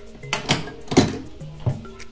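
A motorcycle top box's metal latch being undone and its lid lifted open: three clacks, the loudest about a second in, over background music.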